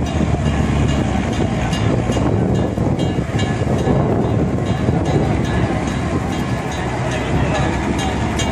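Loud, steady rumble and hiss from fire-fighting water jets and their pumps being turned on a burning crane, with people's voices mixed in.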